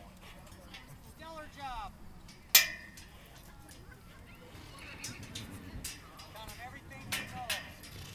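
A horse whinnying, once about a second and a half in and again near the end, each call wavering and falling in pitch. A single sharp knock about two and a half seconds in is the loudest sound.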